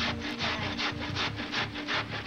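Cabbage being grated by hand over a steel bowl: quick, even rasping strokes, about four or five a second.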